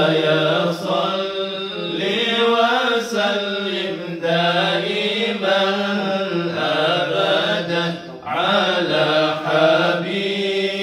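Men chanting Islamic dhikr in a sustained, melodic chant, with a brief break for breath about eight seconds in.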